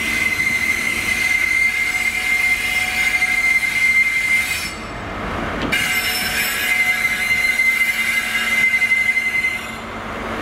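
Steel wheels of a GWR Class 43 HST (InterCity 125) set squealing on the rails as the train rolls into the platform: a loud, steady high-pitched squeal. The squeal drops away for about a second around the middle and then starts up again.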